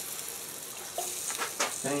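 Water poured from a small container into an electric smoker's water pan: a steady trickle, followed about a second in by a few light knocks as the container and pan are handled.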